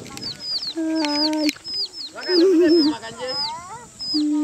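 Chickens calling: a steady run of short, high, falling peeps, about three a second, over lower drawn-out calls. One of the lower calls is held steady about a second in, and another warbles midway through.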